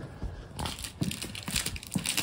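Crumpled paper labels crinkling in short, irregular rustles as a gloved hand gathers them and rubs them across the floor of a van's chiller compartment, with a few light knocks.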